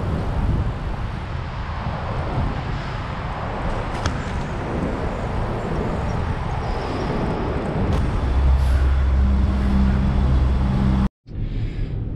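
Wind buffeting the microphone, with tyre and street noise, from a bicycle riding along a city street. For the last few seconds a steady low hum joins in.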